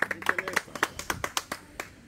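A few people clapping by hand: quick, uneven claps, with faint voices underneath.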